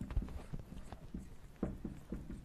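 Marker pen tapping and scraping on a whiteboard as an equation is written out: a run of short, irregular taps, about three a second.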